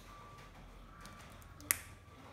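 A single crisp snap, most likely a fresh green bean being broken by hand, about three-quarters of the way through, over faint small clicks of beans being handled.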